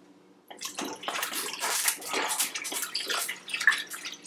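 Almond milk pouring from a plastic jug into a blender jar over ice, starting about half a second in as an uneven, splashing pour.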